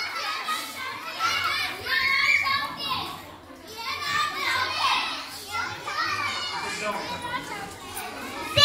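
A crowd of young children chattering and calling out at once, many voices overlapping without a break.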